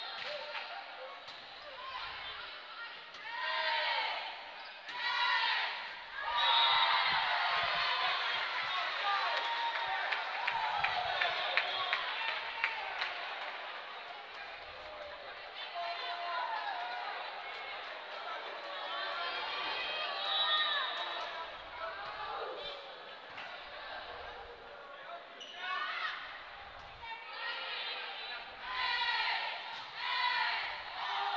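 Volleyball rally in a gym: players and spectators calling and cheering, with sharp smacks of the ball being hit and bouncing on the hardwood floor. The voices and ball impacts are busiest for several seconds starting about a fifth of the way in.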